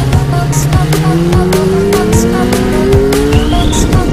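Electronic music with a steady beat over a motorcycle engine accelerating, its pitch rising steadily from about a second in. A brief high rising squeal comes near the end.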